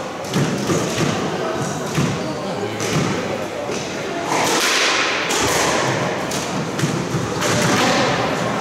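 Squash rally: the ball struck by racquets and hitting the court walls, with a sharp thud about every second. Voices in the background.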